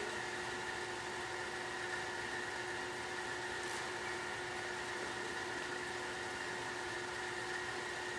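Steady background hum and hiss of the hall, with a faint constant tone and no speech: a pause in the dialogue.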